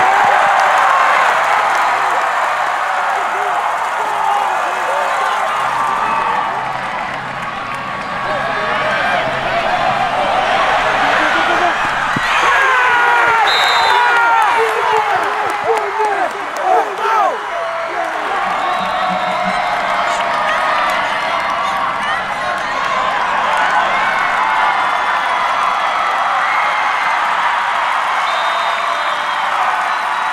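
Football stadium crowd: a steady din of many voices shouting and cheering, busiest around the middle.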